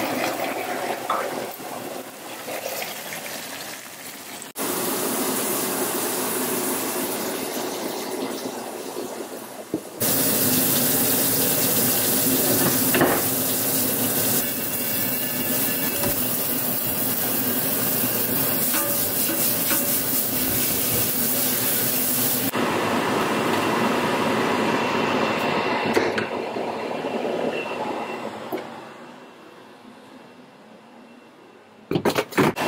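Kitchen tap running hard onto a cast iron skillet in a steel sink: a steady rush of water that starts and stops abruptly. Shorter, quieter stretches of other kitchen sound are cut in before and after it.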